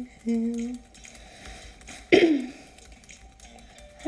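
A young woman humming a short held note, then a brief, loud vocal sound about two seconds in whose pitch falls quickly.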